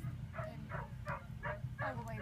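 A dog yipping over and over, about three short yips a second, over a steady low hum.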